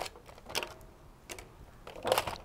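A few faint, sharp clicks and taps, spaced roughly half a second apart, from a screwdriver and the plastic shell of a Nerf Rival Zeus blaster being handled as its back plate is unscrewed.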